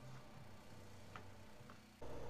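Near silence: room tone with a faint low hum and two faint ticks.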